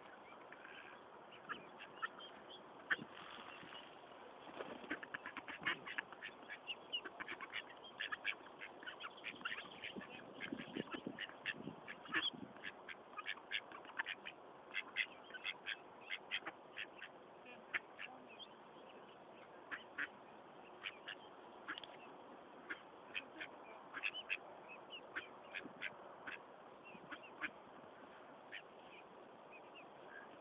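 Mallard ducks and ducklings calling while they feed: many short, irregular quacks and high peeps, thickest through the middle.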